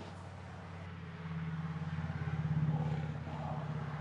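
Low droning motor hum that swells from about a second in and eases off near the end.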